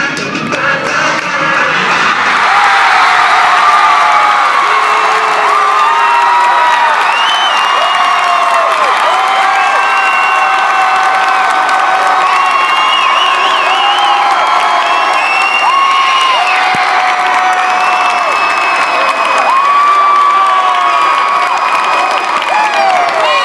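Music drops out within the first two seconds. A packed student crowd in a gymnasium then cheers and screams loudly and without a break, with many voices holding long high yells over the roar.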